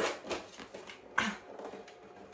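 Quiet handling noise, rustling and light knocks, as a white plastic Silhouette Cameo 4 cutting machine is picked up and lifted, with one short sharper sound about a second in.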